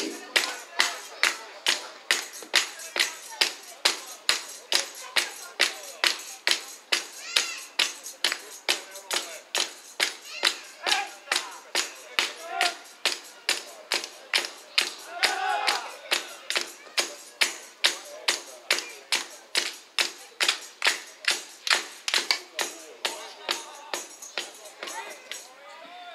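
Steady rhythmic clapping in unison, about two and a half claps a second, with faint voices underneath.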